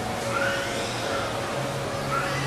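Steady background ambience of a large, busy indoor public space: an even hiss with a low hum and faint, indistinct distant voices.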